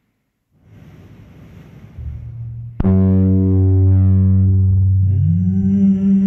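Experimental electronic sound-art music. After a brief silence a hiss swells. A loud, low, steady drone rich in overtones cuts in sharply about three seconds in, and a second tone slides upward to join it near the end.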